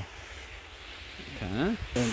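Faint low background rumble, then near the end a pesticide sprayer's lance nozzle starts spraying with a sudden, steady high hiss.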